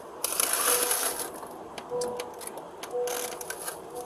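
Rustling and clicking handling noise close to a police body camera's microphone, coming in three bursts. A faint short beep repeats about once a second underneath.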